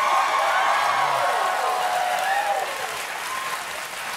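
Studio audience applauding, with voices calling out over the clapping. It is loudest at first and eases off a little towards the end.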